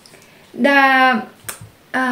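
Mostly speech: a single drawn-out spoken syllable about half a second in, then one sharp click, like a finger snap or a tap, around a second and a half in.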